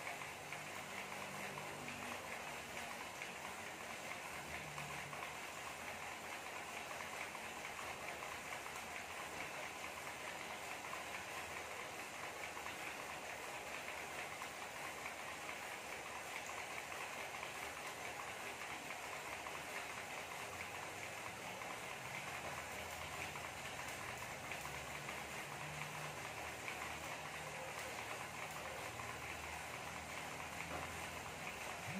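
Road bike's rear tyre spinning on an indoor trainer as it is pedalled: a steady whirring hiss with a low hum that comes and goes.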